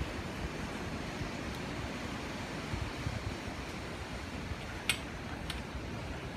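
Steady rushing noise of wind and beach surf, with two short sharp crackles about five seconds in.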